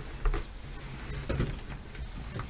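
Handling noise as a sweatband is worked into an M1 helmet liner: rustling with a few light clicks and knocks, the sharpest about a third of a second in and a duller knock a little later.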